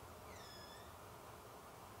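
Near silence over faint room hiss, broken by one short, faint, high-pitched squeal that dips and then rises slightly in pitch, starting about a quarter second in.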